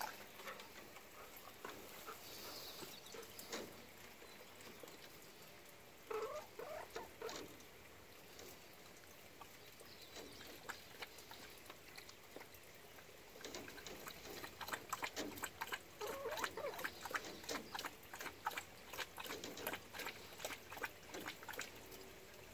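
A golden retriever lapping water from a small tub: a quick, irregular run of wet clicks through the second half. Soft clucks from a hen come in now and then, most plainly a few seconds in.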